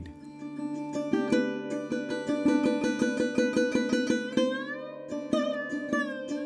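Sarod, a fretless plucked-string instrument, playing a fast run of plucked notes, about five a second, over a steady drone. Near the end the notes slide in pitch.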